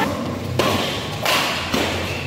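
Badminton racket strikes on a shuttlecock during a rally: two sharp hits about three quarters of a second apart, each echoing in the hall.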